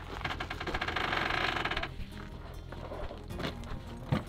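Rapid, even clicking rattle as a rooftop tent is unfolded and set up; it stops about two seconds in, over a steady low hum.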